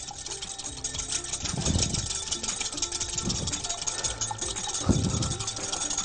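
Hand wire whisk beating a vinegar-and-olive-oil dressing in a glass measuring jug, the metal wires rattling against the glass in rapid, steady clicks as the oil is whisked in to emulsify the dressing.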